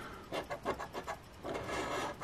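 A scratch-off lottery ticket being scratched: quick short scrapes across the ticket's coating, several strokes a second, running into a steadier scrape near the end.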